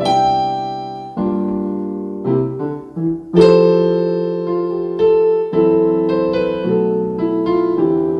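Piano playing a slow gospel chord progression at about 65 beats a minute: Cmaj7, Gm7 and C7, then Fmaj7 with a short melodic run, F#m7b5 and B7b9 resolving to Em7, which opens the turnaround. The chords are struck about once a second and left to ring, the loudest about three seconds in.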